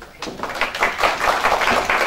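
Applause from a roomful of people, beginning about a quarter second in and swelling to full strength within the first second.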